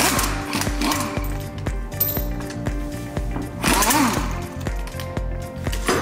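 Background music with a steady beat, over which a pneumatic impact wrench runs in short bursts, loosening a car's wheel bolts: once near the start and again about four seconds in.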